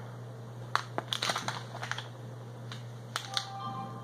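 Clear plastic lure packaging crinkling and crackling in a series of short, irregular crackles as it is handled, over a steady low hum.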